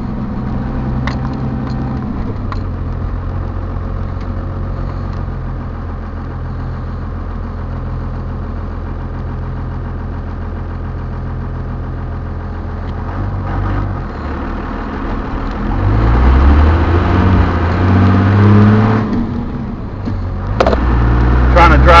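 Dodge Ram's Cummins inline-six turbodiesel idling steadily, still cold, heard from inside the cab. About 15 seconds in it pulls away and engine speed climbs, dips briefly around 19–20 seconds as a gear changes, then climbs again.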